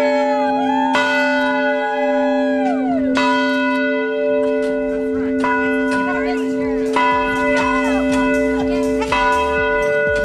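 A single swinging tower bell on a wheel, rung by pulling its rope, striking about every two seconds, each stroke ringing on into the next. Voices call out over it.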